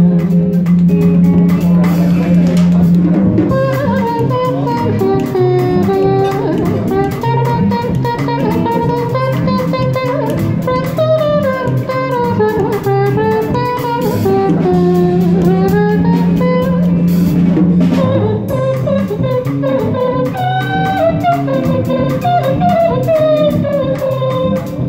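Live band playing a jazzy passage: a melodic guitar lead over drums, with long held bass notes near the start and again in the middle.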